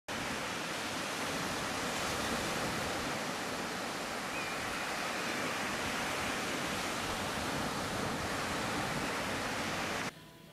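Ocean surf: a steady, even rush of waves breaking on the shore, which cuts off suddenly at the end.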